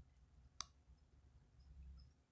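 A single computer mouse click a little over half a second in, against near-silent room tone.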